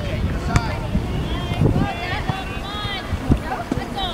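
Distant voices of youth soccer players and sideline spectators calling out across the field, over a steady wind rumble on the microphone, with a couple of short thumps.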